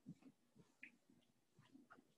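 Near silence broken by faint short squeaks and light taps of a dry-erase marker writing on a whiteboard.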